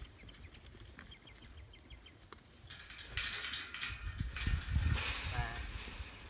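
Metal livestock pen panels rattling and clanking as a flock of sheep crowds against them, with hooves scuffling. It starts about halfway in and is loudest near the end.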